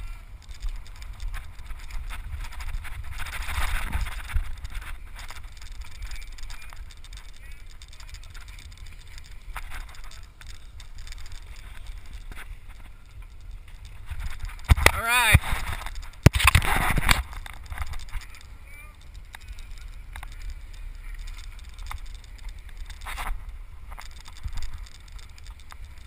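Low, steady rumble of wind buffeting the camera's microphone as the boat runs, with loud, unintelligible shouting from a crew member a little past halfway.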